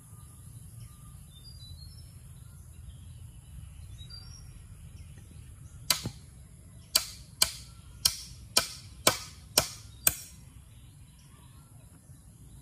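Hammer blows on a round wooden pole, nailing it into the frame: one strike about halfway in, then after a pause seven more in a steady run of about two a second.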